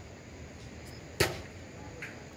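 One sharp tap a little over a second in, over steady faint outdoor background noise.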